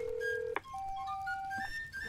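Telephone call tones: a steady ringback tone for about half a second, a click as the line picks up, then a held electronic beep with short tones stepping upward in pitch, the voicemail prompt before a message is recorded.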